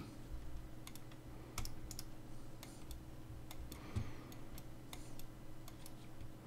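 Faint, irregular clicks of computer controls, about a dozen, as a mouse and keyboard are worked, over a faint steady hum.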